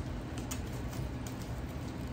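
Quiet room noise with a few faint ticks and light creaks from a wicker picnic basket being handled by its handles.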